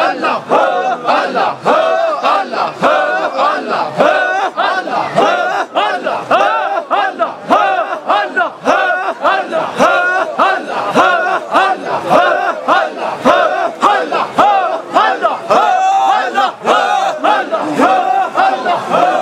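A crowd of men chanting loudly in unison, a short religious phrase repeated over and over in a steady rhythm.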